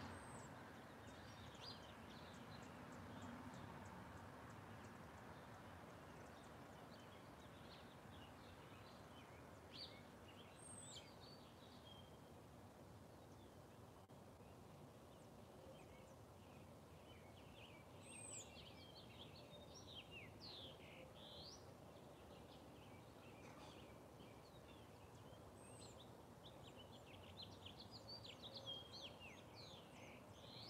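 Faint birdsong: scattered short chirps and occasional high, downslurred calls over a steady low outdoor background hiss. The calls come more thickly about two-thirds of the way through and again near the end.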